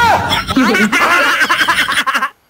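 Loud, overlapping voices laughing and shouting.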